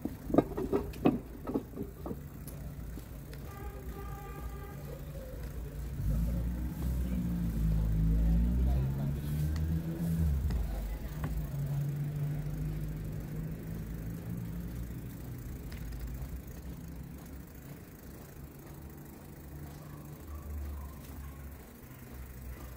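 Street traffic: a motor vehicle's engine passes close by from about six to ten seconds in, its pitch gliding up and down, and then settles into a steady low hum that slowly fades. A few short sharp scrapes are heard in the first two seconds.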